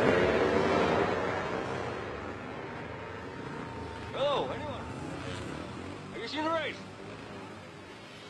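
Off-road motorcycle engines running loud as a group of bikes sets off, the sound sinking in pitch and fading over the first few seconds. About four and six seconds in come two brief sounds that rise and fall in pitch.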